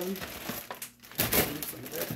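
Plastic grocery packaging crinkling and rustling in uneven bursts as items are handled in a shopping bag, loudest a little past the middle.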